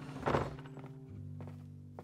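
Wooden lattice double doors pulled shut with a single thunk about a third of a second in, over background music of held low string notes.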